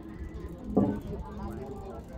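Voices of people talking nearby over a steady low outdoor rumble, with one loud short voice just under a second in.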